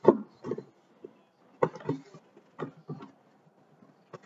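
Handling noises: about six short knocks and taps, spaced unevenly with quiet gaps, as gift products and their box are handled and set down on a table.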